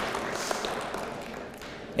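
Audience applauding, the clapping thinning out and fading away.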